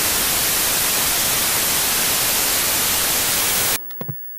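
Television static: a steady, loud hiss of white noise that cuts off suddenly near the end as the old tube TV switches off, followed by a couple of faint blips.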